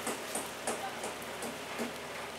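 Steady hiss of background noise with a few faint clicks and taps.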